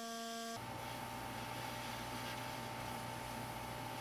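Pneumatic air scribe buzzing steadily as it chips rock matrix away from fossil dinosaur bone, with a low hum under it. It sets in about half a second in.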